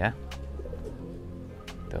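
Domestic pigeons cooing softly.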